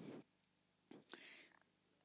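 Near silence, with a faint breathy hiss close to the handheld microphone about a second in.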